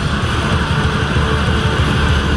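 Live black metal band playing loud: distorted electric guitars and bass over fast, dense drumming.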